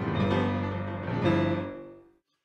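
Grand piano playing the closing bars of a New Orleans-style rhythm-and-blues tune, ending on a final chord struck a little over a second in that rings out and fades away.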